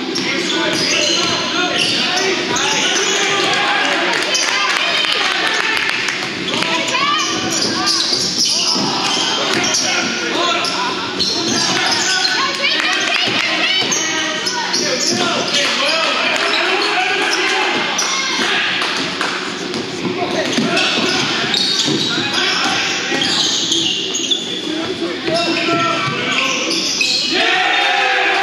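Basketball being dribbled and bounced on a hardwood court during live play, with sneakers squeaking and indistinct shouts from players and bench, echoing in a large gym.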